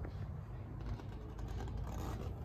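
Low steady indoor rumble with a few faint light clicks and rustles, typical of a handheld camera being moved about.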